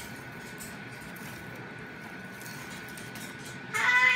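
Goffin's cockatoo rummaging beak-first through a trash can full of chewed wood chips: faint rustling and light clicks of the chips. A voice cuts in near the end.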